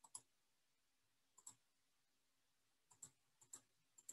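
Faint computer mouse clicks, about five spaced irregularly over a few seconds, in near silence.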